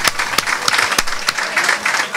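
Small live audience applauding, with several sharp individual claps standing out.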